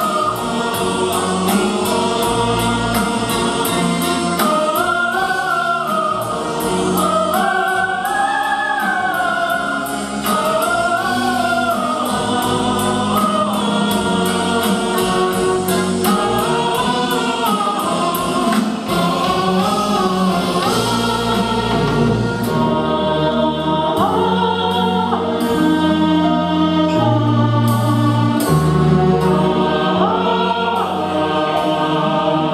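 Mixed choir of women's and men's voices singing together in sustained harmony, over an accompaniment with a steady beat.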